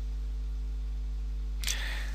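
Steady low electrical hum with faint hiss in the narration recording, and a brief breathy hiss near the end.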